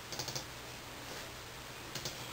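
Computer keyboard clicking faintly: a quick run of a few keystrokes just after the start, then one more click near the end.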